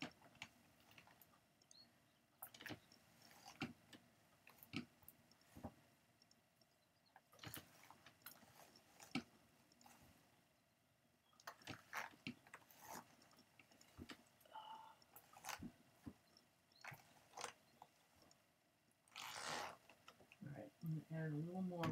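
Near silence, broken by faint irregular clicks and light scratchy rustles as hands press and smooth wool fibre onto a blending board's carding cloth. A brief, louder rustle comes just before the end.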